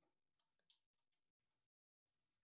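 Near silence, with a couple of very faint short ticks, the clearest about three quarters of a second in.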